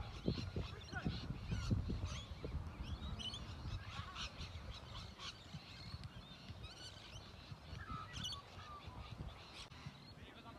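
Many short bird calls and chirps over a low rumble with uneven thumps; the rumble is strongest in the first couple of seconds and then eases off.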